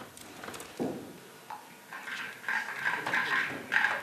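Footsteps on a hard floor in a small hall, with indistinct low voices in the room growing louder over the last two seconds.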